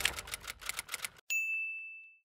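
Typewriter sound effect: rapid key clacks, about ten a second and fading away, then a short pause and a single typewriter bell ding that rings out.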